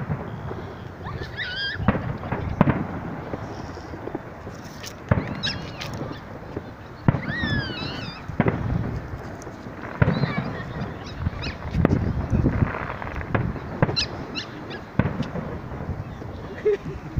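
Aerial fireworks shells bursting at a distance, a boom every second or two over a steady background rumble.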